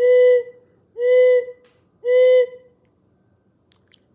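Faulk's D-8 wooden dove call blown in three short hooting notes about a second apart, each held at one steady low pitch that dips slightly at its end, imitating a dove's coo.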